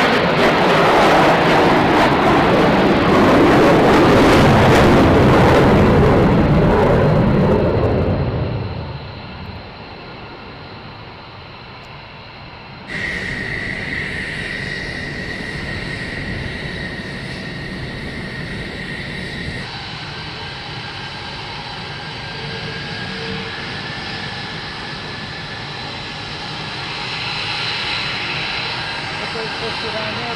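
F-22 Raptor's twin turbofan jet engines running at high power, a loud roar that fades out about eight or nine seconds in. After a cut about thirteen seconds in, quieter jet engine noise from taxiing fighter jets, with a steady high-pitched whine.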